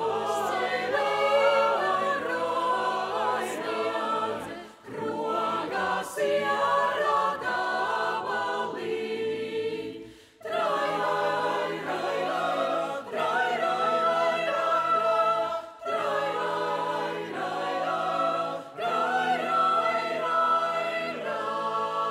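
Mixed choir of men's and women's voices singing a cappella, phrase after phrase with brief pauses between them, the deepest about ten seconds in.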